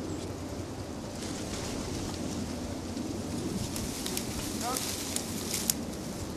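Faint, indistinct voices over a steady outdoor background hiss, with one brief rising call about three-quarters through and a few sharp clicks shortly before the end.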